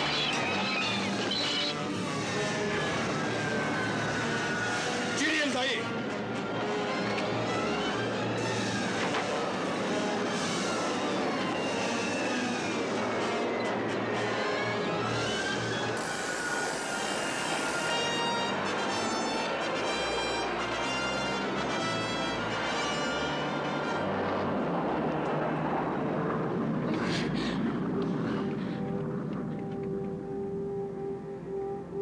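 Dramatic orchestral film score over airline passengers screaming and shouting as the plane lurches in turbulence.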